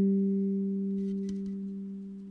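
Wooden kalimba's low notes ringing on and slowly fading out after the last plucks, with a couple of faint clicks about a second in.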